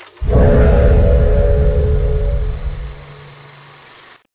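Channel logo sound sting: a sudden deep low swell with a held tone above it, fading away over the next three seconds.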